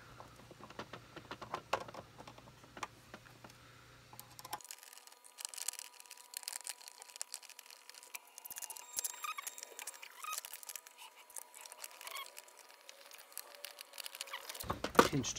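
Faint handling noise: scattered small clicks and scratchy rustling as a cable clip is fitted and braided harness sleeving is tucked into a 3D-printer heated bed's wiring connector. The clicking grows busier about five seconds in.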